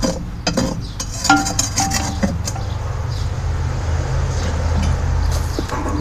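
Clinker and ash being scraped and scooped out of a coke forge's metal fire pot: irregular scrapes and clinks with a couple of brief metallic rings, giving way after about two seconds to a steady low rumble.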